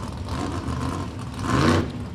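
A drag race car's engine running at low revs, swelling and rising in pitch briefly near the end.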